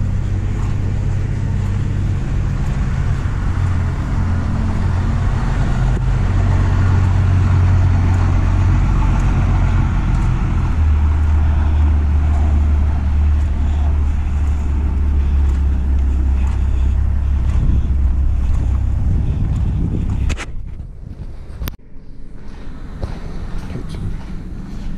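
Steady low droning hum with a rushing noise over it, as from running machinery, that stops abruptly about twenty seconds in. A single sharp click follows about a second later.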